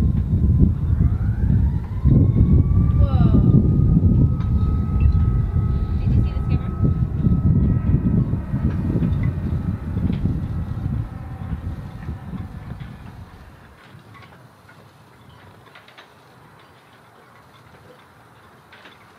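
Outdoor ambience of a low, uneven rumble, with a distant siren whose wail rises early on and then holds its pitch. The sound fades out about two-thirds of the way through.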